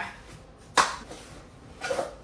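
A cardboard shoe box being pulled open: one sharp, short crack of cardboard a little under a second in, with a quieter click near the end.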